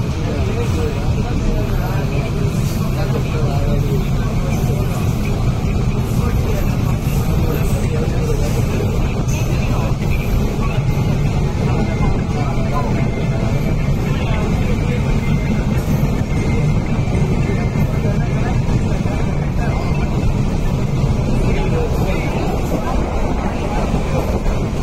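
Electric multiple-unit (EMU) suburban train running steadily across a bridge, heard from on board at an open door: a continuous rumble of the wheels on the rails, with passengers' voices mixed in.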